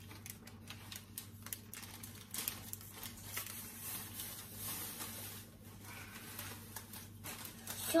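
A small sachet of baking powder being torn open and crinkled between a child's fingers: a continuous run of quick, small crackles and rustles.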